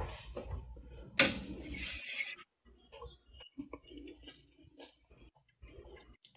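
Faint clatter of a ladle scooping sauce from a large stainless steel pot, with one sharp clink about a second in, then only small scattered sounds.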